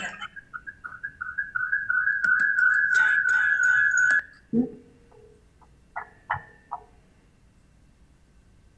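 Audio feedback in a video call: a laugh comes back as a stuttering echo that builds into a steady high whine lasting about three seconds, then stops suddenly. It is an echo loop from an unmuted participant's speaker feeding into a microphone, followed by a few faint short echoes.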